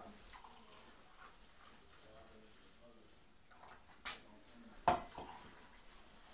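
Coffee poured from a carafe into a ceramic mug, then a few sharp clinks against the mugs, the loudest about five seconds in.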